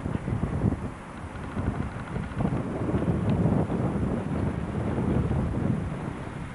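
Wind buffeting the camcorder microphone: a low, uneven rumble that swells and fades, heaviest in the middle.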